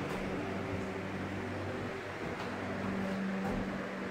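A steady low hum with a faint, even hiss behind it, with no distinct events.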